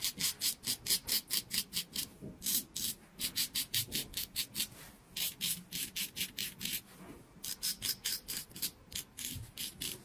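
Straight razor scraping through lathered stubble on a man's face in quick, short strokes, about five a second. The strokes come in runs broken by brief pauses.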